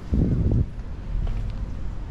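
Wind buffeting the camera microphone: a short gust of low rumbling in the first half second, then a steady low rumble.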